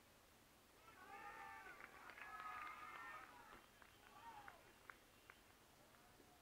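Faint, distant shouting from several voices on and around a football ground, overlapping for about two seconds, followed by a few light clicks.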